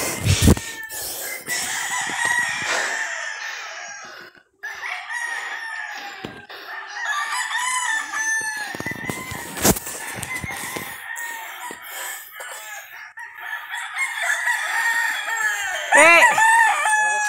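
Chickens clucking on and off, with a rooster starting to crow right at the end. Two sharp knocks stand out, one near the start and one about ten seconds in.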